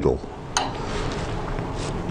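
Steady background hiss from a lathe that is switched off, with a single light knock about half a second in and a fainter one near the end.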